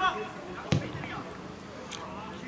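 A single sharp thud of a football being kicked, about two-thirds of a second in, over faint shouts of players on the pitch with no crowd noise.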